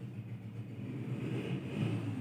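A low, steady rumble that grows louder about a second and a half in.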